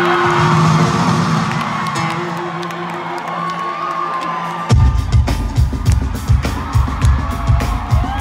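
Live pop concert music through the venue's sound system, heard from among the audience: held chords at first, then a heavy drum beat kicks in just under five seconds in. Crowd cheering and whoops sound over the music.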